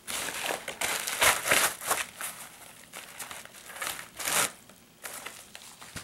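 Plastic poly mailer bag crinkling and rustling in irregular bursts as a fabric gear roll pouch is pulled out of it. The loudest rustle comes about a second in, with another near four seconds.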